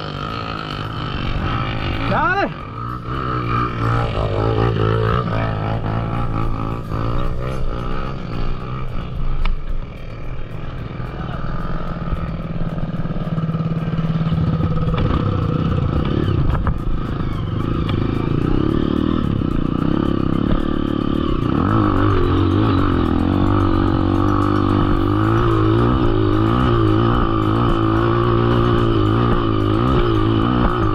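Dirt bike engine running steadily at low revs, with music and a singing voice mixed over it.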